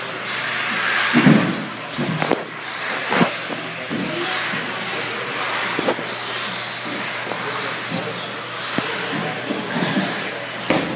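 Radio-controlled 4WD buggies racing on an indoor carpet track: a steady high-pitched whir of motors and tyres, broken by several sharp knocks.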